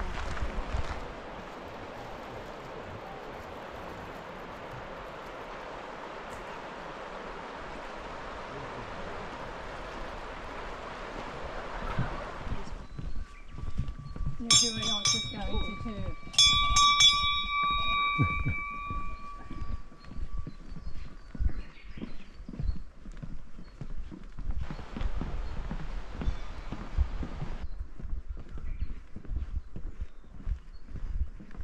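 Steady rush of a fast mountain river for about the first twelve seconds. Then a metal bell hung on a trail post is struck twice, about two seconds apart, each time ringing out and dying away over several seconds, followed by footsteps knocking on a wooden boardwalk.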